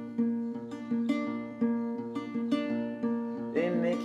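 Acoustic guitar fingerpicked, playing a repeating figure of plucked notes between sung lines. A singing voice comes back in near the end.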